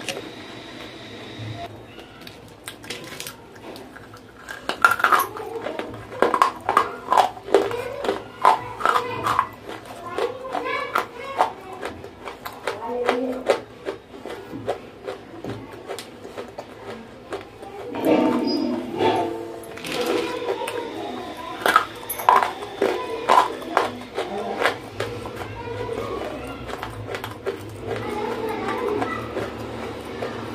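Dry, chalky clay lumps being bitten and chewed close to the microphone: a dense run of sharp crunches and crackles.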